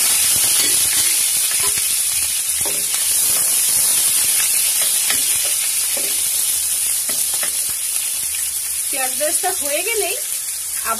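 Sliced onions sizzling in hot oil in a nonstick frying pan: a loud, steady hiss that eases gradually as they fry, with a spatula stirring them partway through.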